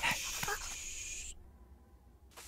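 A small cartoon animal's brief vocal sounds, over a hissing noise that cuts off suddenly about a second and a half in.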